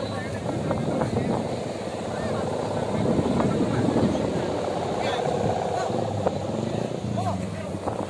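Steady droning hum of kite hummers (sendaren) on kites flying overhead, mixed with scattered crowd voices and wind on the microphone.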